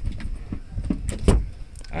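Clicks and knocks of a Toyota Spacio rear-seat headrest being worked out of its seatback sockets, with the loudest knock a little past halfway.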